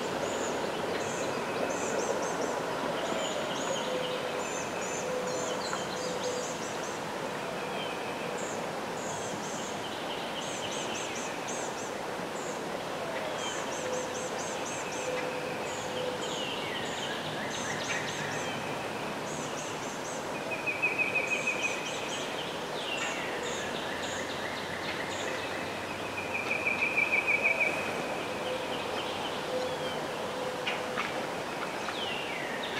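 Wild birds calling in riverside woods: many short high chirps and trills throughout, over a steady outdoor hiss. Twice in the second half, near the end both times, a louder rapid trill stands out.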